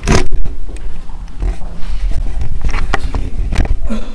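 Handling noise on a handheld Tascam digital recorder as it is picked up from a tiled floor and gripped: a sudden loud rub at the start, then a low rumble with scattered scrapes and small clicks.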